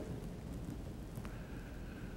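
Faint, steady room tone of a church sanctuary: an even low hiss with no distinct event.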